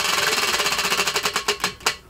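Spinning prize wheel, its pointer clicking rapidly over the pegs, the clicks slowing and spreading out until the wheel stops near the end.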